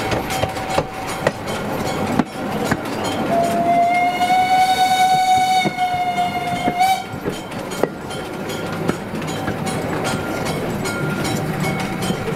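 Steel wheels of a railway wagon rolling along the track with a steady rumble and repeated clicks. A steam locomotive whistle sounds one long blast from about three seconds in to about seven seconds.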